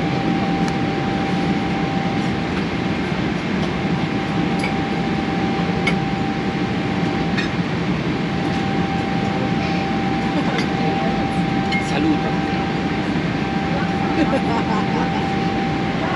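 Steady cabin roar of an airliner in flight, with a faint steady whine running through it and a few light clinks.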